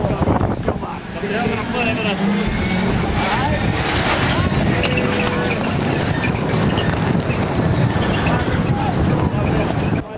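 Several rallycross race cars' engines revving hard and changing pitch as the pack slides through a corner, over a steady dense mix of engine noise.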